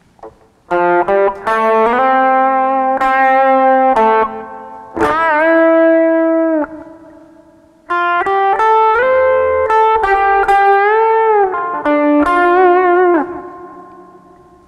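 Electric guitar picking a slow single-note solo melody, with a string bent up in pitch and held, a bend released back down, and vibrato on sustained notes.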